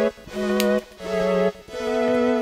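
Background music: held, organ-like notes that change about every half second, with short breaks between them.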